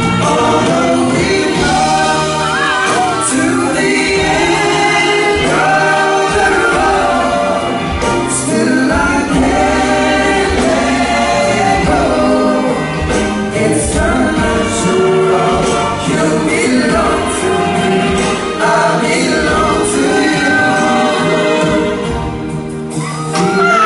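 Male vocal group singing an R&B song live with a band, several voices in harmony over keyboards and drums, heard through a concert hall's PA.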